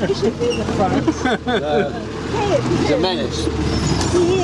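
A 4x4's engine running steadily as it crawls over a muddy, rutted track, with several people's voices going on over it.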